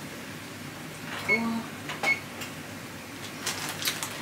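Faint kitchen handling noises: a few light clicks and a plastic rustle near the end, with a brief faint vocal sound about a second in.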